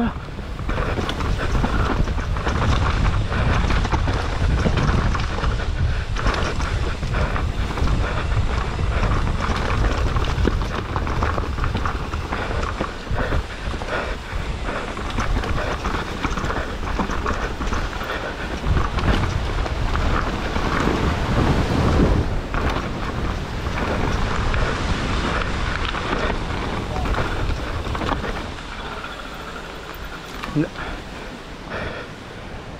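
Enduro mountain bike ridden fast down dirt forest singletrack: tyres on dirt and roots, with the frame and chain rattling over bumps and wind buffeting the camera microphone. The noise eases near the end.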